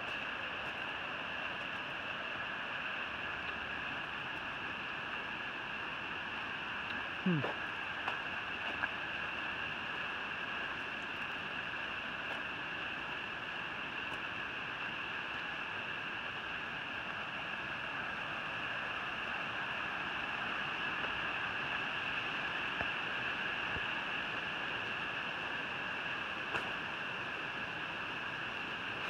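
Steady rushing of a mountain stream, with a short hummed "hmm" about seven seconds in.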